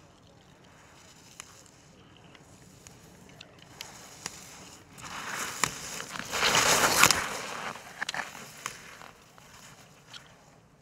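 Blizzard race skis carving a turn on firm, groomed snow as a racer passes close by: the scraping hiss of the edges swells from about five seconds in, is loudest around seven seconds, and fades out, with a few sharp clicks along the way.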